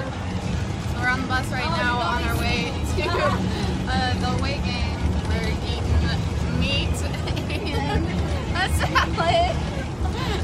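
Steady low rumble of a running bus, heard inside the passenger cabin, under the overlapping chatter of several girls' voices.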